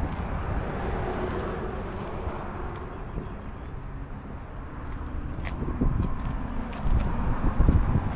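Outdoor ambience of steady road traffic: a continuous rush of passing vehicles that dips in the middle and swells again with a low rumble near the end.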